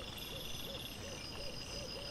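Night insects chirring steadily in a high pulsing band, with a quick series of short, rising-and-falling low calls about three a second over it.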